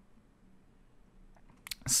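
Near silence: quiet room tone with a faint low hum, then a few short sharp clicks near the end just before speech resumes.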